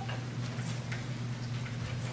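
A steady low hum with a few faint, scattered clicks and taps over it.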